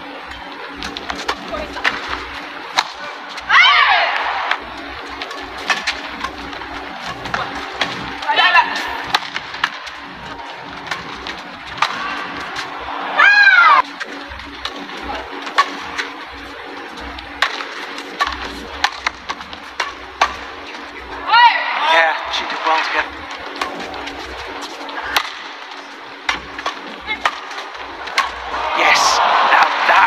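Badminton doubles rallies: rackets strike the shuttlecock again and again in sharp, quick hits over a steady hum of arena crowd noise. Five brief, loud, high-pitched squeals are scattered through the rallies.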